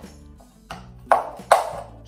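Pencil point pushed through the bottom of a Styrofoam cup to poke holes: three sharp pops, each with a short ringing tail, the first a little after half a second in and the last near the end. Background music plays underneath.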